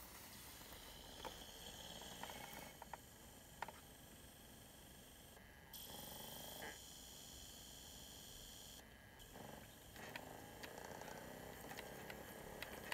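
Faint steady whirring with a few soft clicks scattered through it: a DVD player spinning and reading a disc while it loads.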